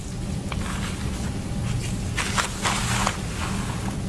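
Handling noise as suture is pulled and knotted with a needle holder: a faint click about half a second in and a cluster of rustling scrapes from about two to three seconds in, over a steady low hum.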